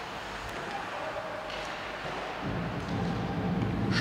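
Ice hockey arena background noise: a steady low rumble of the rink during play, growing louder a little past halfway.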